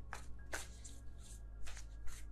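A tarot deck being shuffled by hand: a faint, irregular series of soft card swishes.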